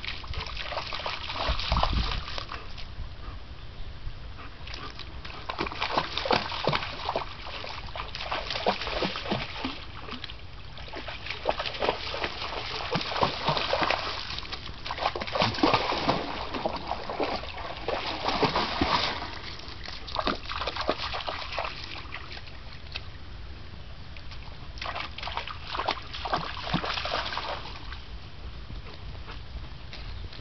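A young German shepherd splashing and wading through shallow creek water, in irregular bouts of splashing with short lulls between them.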